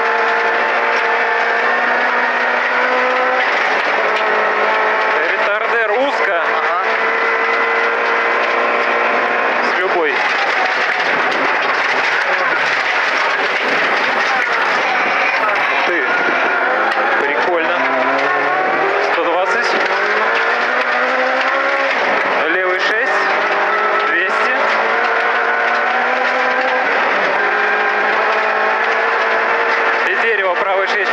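VAZ 2108 rally car's four-cylinder engine running hard, heard from inside the cabin, its pitch falling and climbing again several times as the driver lifts off and changes gear.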